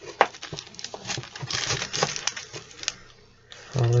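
Cardboard sports cards being flipped through by hand in a long cardboard storage box: a quick run of soft clicks and rustling that dies down shortly before a man's voice comes in at the end.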